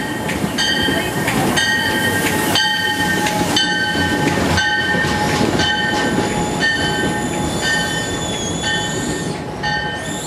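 Locomotive bell striking about once a second on an Amtrak Cascades train, each strike ringing on, over the low rumble of the train rolling close past.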